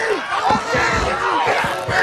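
Several people shouting over one another during a scuffle, with a couple of dull thuds about halfway through and near the end.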